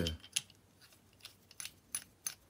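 A few light, sharp metallic clicks and taps, spaced out, as a steel CO2 cartridge and an aluminium CO2 inflator head are handled and fitted together.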